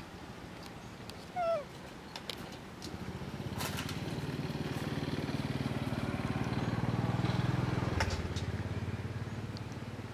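A motorcycle engine passing by, swelling from about three seconds in to its loudest near eight seconds and then fading. A short high squeak comes about a second and a half in.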